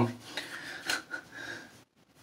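The tail of a man's word, then faint breathing with a short sniff through the nose about a second in. The sound drops to near silence shortly before the end.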